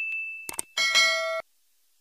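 Bell-notification sound effect: a ringing ding fades out, a click comes about half a second in, then a bright bell chime follows and cuts off after about half a second.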